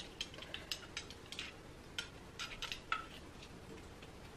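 A wooden chopstick tapping and scraping inside a small bottle, making faint, irregular clicks.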